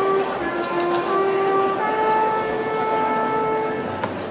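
Brass section of a school marching band playing long held notes, several at once, moving slowly from one chord to the next over crowd murmur.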